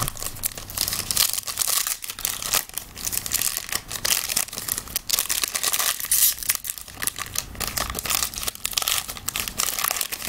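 Foil wrapper of a trading-card pack crinkling and tearing as it is handled and opened by hand: a dense, irregular run of crackles.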